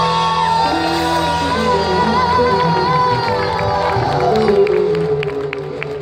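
A live band with drums and keyboard plays the closing bars of a song under a held, wavering lead line. The music thins out about five seconds in, as a few sharp claps begin.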